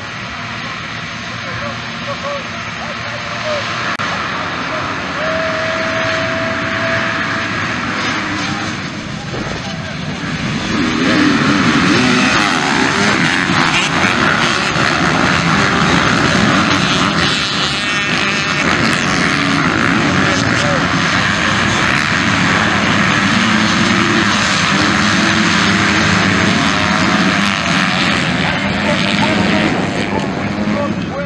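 A field of motocross dirt bikes revving hard together. The sound gets much louder about ten seconds in as the pack accelerates off the start and passes close by.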